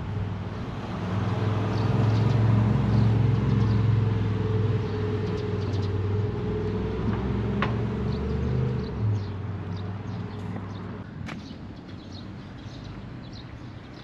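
A motor vehicle's engine running close by, growing louder over the first couple of seconds and then fading away over several seconds as it passes.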